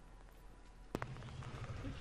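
Faint outdoor background, broken about a second in by a single sharp click, after which a low steady background sound continues a little louder.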